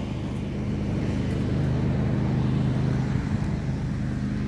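Riding lawn mower's engine running at a steady pitch as the mower travels, getting a little louder in the middle.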